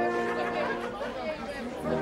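A brass band's held chord dies away and people chatter for a moment, then the brass comes in again with a new held chord near the end.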